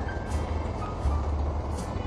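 Low, steady rumble of a car driving on a freeway, with faint music under it.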